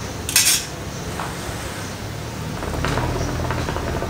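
Metal tongs clink against the hookah's metal bowl as a charcoal cube is set on it: one short, bright clink about half a second in. From about two and a half seconds in, a low steady rumble as the hookah is drawn on to get the coal going.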